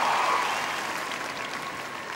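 A large audience applauding, the applause dying away.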